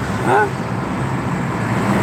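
Steady road and engine noise of a car driving, heard from inside its cabin.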